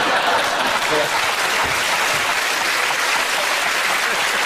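Studio audience applauding and laughing, a steady wash of clapping with laughter through it.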